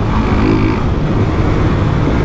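Motorcycle engine running steadily while riding at street speed, with wind noise rushing over the microphone.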